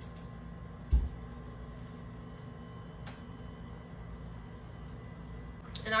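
Steady low hum of a refrigerator, which is running loud, with one dull thump about a second in.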